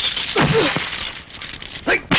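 Film sound effects of glass shattering, with a man's short cry at the break and fragments crackling and tinkling as it dies away.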